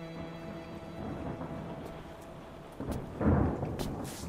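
Steady rain with a rumble of thunder about three seconds in, the loudest sound here, as the tail of orchestral music fades out in the first second.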